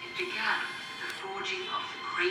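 Film soundtrack played through a television's speakers into the room: a woman's voice narrating over soft, sustained music.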